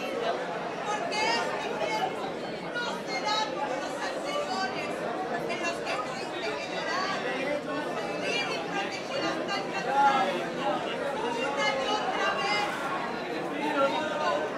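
Speech only: a woman talking on stage, with chatter of other voices.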